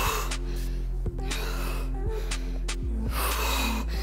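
Background workout music with a steady bass line, over about four hard breaths from a woman exercising, in time with her one-arm dumbbell swings.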